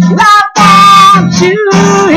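A man singing loudly over a hard-strummed acoustic guitar. His voice slides between held notes over steady chords, with a brief break about half a second in.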